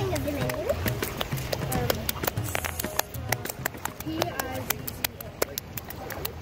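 Hands patting and slapping wet sand in a shallow puddle on a rock: a quick, irregular run of small wet smacks and clicks. It is the kind of close-up sound that is called "like ASMR."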